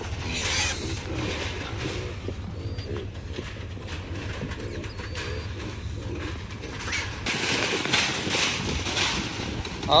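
Trapped wild hogs grunting in short, low, irregular calls inside a steel-mesh trap trailer, over a steady low rumble of wind on the microphone; near the end comes a burst of scuffling noise as they move in the cage.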